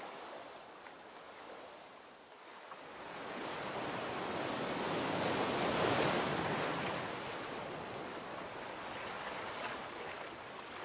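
Ocean surf washing onto a beach: a steady rush of waves that dips about two seconds in, swells to a peak about six seconds in, then eases off.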